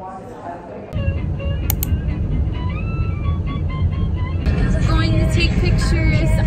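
Low steady road rumble inside a moving car, starting suddenly about a second in, with a song playing over it; a woman's voice joins near the end.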